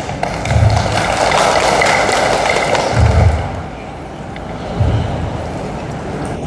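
Audience applauding for about three seconds, then dying away, with a few dull low thumps.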